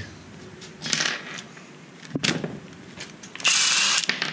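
A small machine screw being cut to length in the screw-cutting jaws of a wire stripper/crimper: light metal scraping, a sharp click about two seconds in, and a louder burst of scraping noise near the end.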